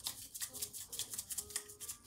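Small plastic container of food being shaken to dispense it, a rapid run of short rattling strokes, several a second.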